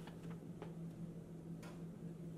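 Faint room tone: a steady low electrical hum, with a few light, irregularly spaced clicks, about four in two seconds.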